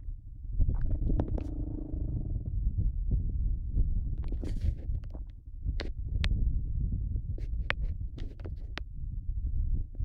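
Low, gusty rumble of wind buffeting the microphone, with scattered sharp clicks and knocks throughout. The quad bike's engine note comes up briefly about a second in.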